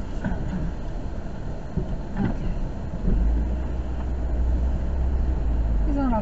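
Car driving, heard from inside the cabin: a steady low engine and road rumble that grows stronger about halfway through as the car picks up speed.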